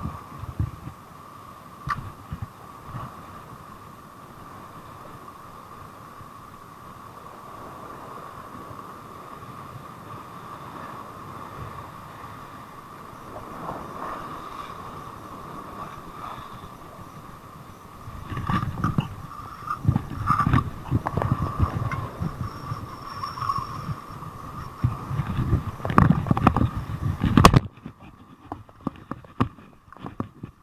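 Sea surf washing against a rocky shore, with wind buffeting the camera microphone in heavy low gusts during the second half, over a steady faint hum. The sound drops off suddenly near the end.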